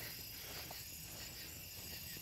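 Faint, steady trilling of crickets in the night air.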